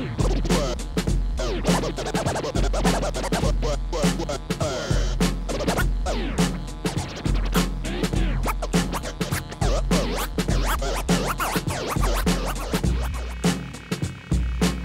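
Turntable scratching: a vinyl record on a Technics turntable pushed back and forth by hand and cut in and out with the mixer's fader, in dense rapid runs of rising and falling scratches. It plays over a beat with a repeating bass line.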